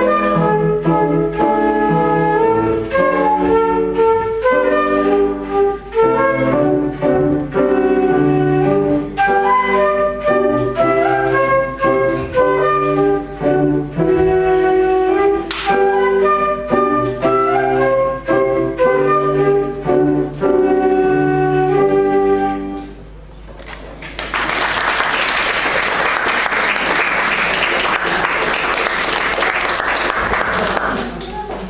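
Transverse flute playing a melody with grand piano accompaniment, the piece ending about 23 seconds in. After a short pause, audience applause.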